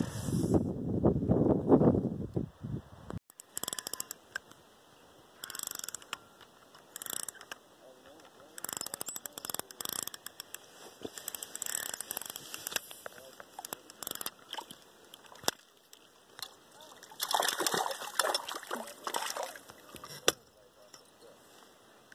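A low rumble, the loudest thing here, cuts off abruptly about three seconds in. After it come scattered soft splashes and sloshing at the water's surface as a hooked brook trout thrashes on a fishing line, with the heaviest splashing near the end.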